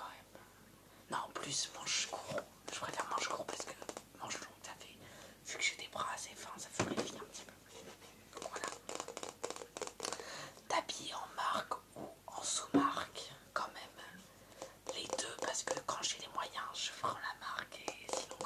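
Close whispering, broken up by many short sharp taps and handling noises as hands work a red Coca-Cola item.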